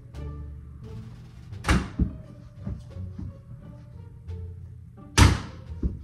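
Background music with a steady beat, over two loud knocks about three and a half seconds apart as a small rubber ball strikes a toddler's plastic basketball hoop, each followed by a softer knock as it bounces.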